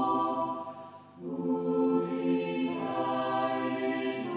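Choral music: voices singing slow, sustained chords, with a short break about a second in before the next phrase begins.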